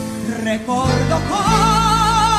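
Live music: a woman singing over guitar accompaniment. About halfway through she starts one long held note with a steady vibrato.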